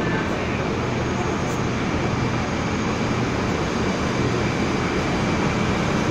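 Steady rumble of an approaching train echoing in an underground station, with a low drone from the R136 diesel-electric locomotive pulling in, growing slightly louder near the end.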